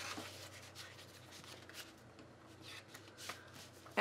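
Faint paper rustling with a few soft ticks and taps, mostly in the second half: hands handling a planner's pages and a sheet of stickers.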